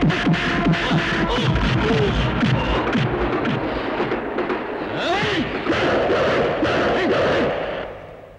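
Film fight-scene soundtrack: action music mixed with a rapid run of punch-impact sound effects in the first few seconds and a man's shouting, fading out near the end.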